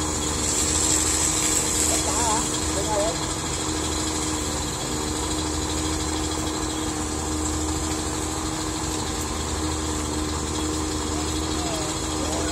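A vehicle engine idling with a steady hum, under a constant high hiss; faint voices come in briefly a couple of times.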